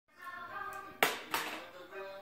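A small child's hands clapping twice, about a second in, a third of a second apart. Behind them, a television soundtrack with singing plays.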